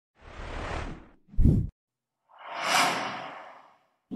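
Animated-intro sound effects: a whoosh, a short low thump, then a longer whoosh that swells and fades away.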